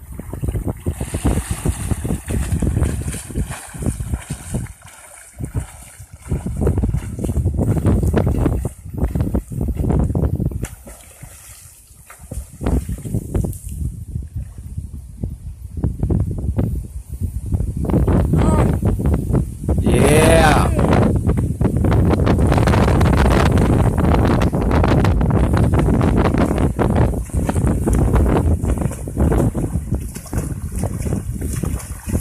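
Wind buffeting the microphone in uneven gusts, with water splashing as a person wades and swims across a shallow bayou.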